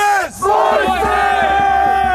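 A crowd of protesters shouting together, many voices holding long, loud yells at once.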